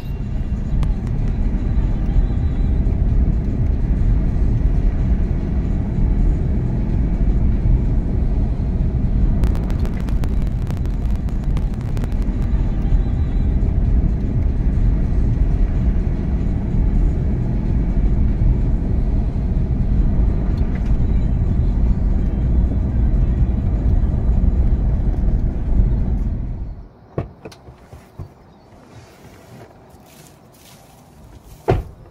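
A vehicle driving along a dirt track: a steady low rumble of engine and tyres that cuts off suddenly near the end, leaving a few faint clicks.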